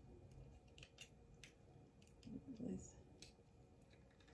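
Faint, scattered clicks from handling a small cookie-shaped compact mirror, over near silence.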